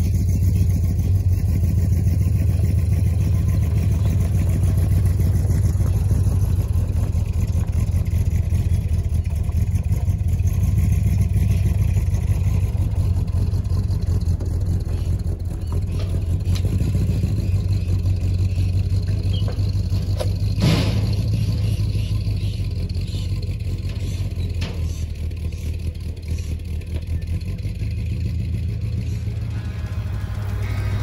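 Ford XB Falcon ute's engine running with a steady low rumble as the car is moved slowly. There is a single sharp clack about two-thirds of the way through.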